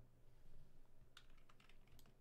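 Faint, irregular light taps of a computer keyboard being typed on, a handful of keystrokes.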